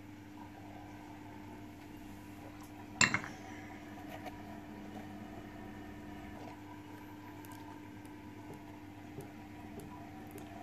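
Quiet room tone with a steady low hum; about three seconds in, a single sharp clink of tableware that rings briefly, followed by a few faint small knocks.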